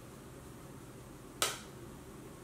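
A single sharp click about one and a half seconds in, over a faint steady low room hum.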